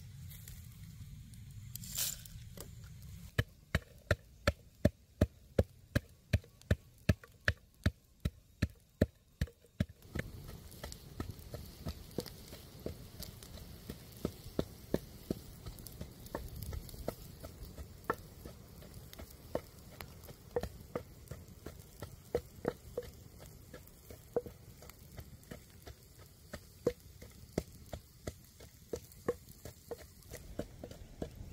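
A wooden pestle pounding chillies, garlic and palm sugar in a wooden mortar, about two or three hard strikes a second for several seconds. Then a wood fire crackling and sizzling under poultry roasting on a spit, with irregular pops.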